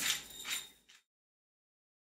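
Brief grinding of a hand pepper mill over a bowl of potato dough in the first second, then the sound cuts out to complete silence.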